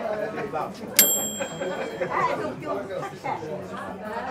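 Indistinct background chatter of people talking. About a second in there is one sharp clink that rings on briefly with a bright, high tone.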